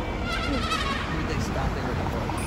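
A horse neighing once: a short, wavering call that falls in pitch, near the start, over street noise and voices.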